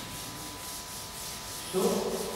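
A felt chalkboard eraser rubbing across a blackboard in quick back-and-forth strokes, wiping off chalk writing.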